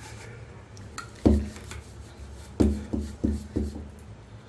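Dull thumps of hands patting and pressing a thin rolled-out disc of dough flat on a worktop: one about a second in, then four in quick succession near the end.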